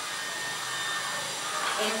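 Steady background hiss of room and recording noise, with no other distinct event; a voice begins right at the end.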